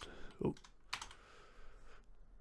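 A few faint keystrokes on a computer keyboard, one sharper tap about a second in, with a short spoken 'ooh' near the start.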